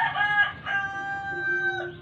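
A rooster crowing: a short opening note, then one long held call that cuts off near the end.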